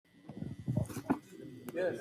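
A man's voice close to the microphone, low and without clear words at first, with a couple of sharp clicks, then a short spoken 'Yes.' near the end.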